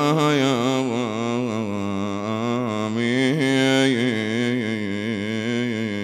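A man's solo voice chanting Arabic elegiac poetry for Husayn in one long melismatic phrase, the pitch wavering up and down without a break and easing off near the end.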